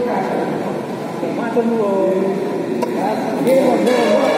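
Men's voices talking and calling out indistinctly in a badminton hall, with a couple of sharp taps about three seconds in.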